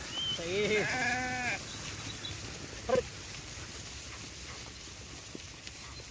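A sheep bleats once near the start, a wavering call lasting about a second. About three seconds in there is a short, sharp sound.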